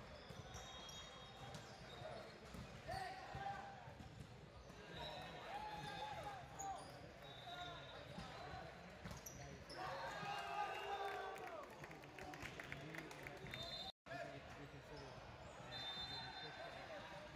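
Volleyball being struck and bouncing on a hardwood gym floor, with players' short shouted calls at intervals.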